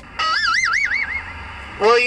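A warbling electronic tone from a CB radio, its pitch swinging up and down about five times a second for about a second before fading.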